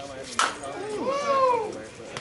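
A softball bat cracks sharply against the ball about half a second in, followed by a drawn-out yell that rises and falls in pitch.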